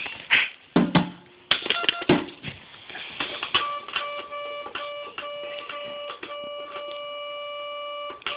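Electronic toy keyboard playing a beat: a few knocks and short toy sounds as its buttons are pressed, then from about three and a half seconds in a held electronic tone over a regular beat.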